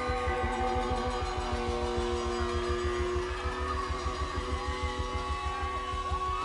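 Live rock band playing: electric guitar holding long notes with pitch bends and slides, over a quick pulsing low end.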